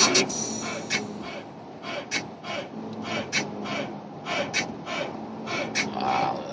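Hip-hop music playing on the car radio inside the car, its beat a string of sharp, hissy hits over a low steady hum.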